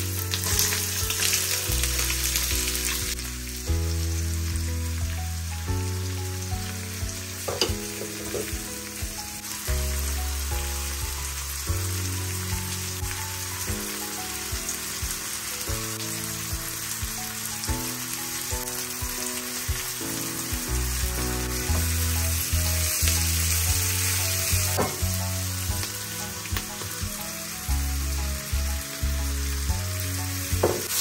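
Onion, garlic and vegetables frying in hot oil in a nonstick frying pan: a steady sizzle, loudest in the first few seconds as the sliced onion goes in, with a few knocks and scrapes of a spatula on the pan. Soft background music plays underneath.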